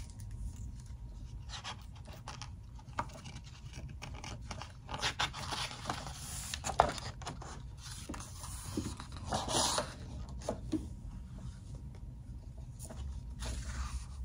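Paper rustling and scraping as a large picture book's page is turned and the book handled, in several short bursts mostly in the middle, over faint room hum.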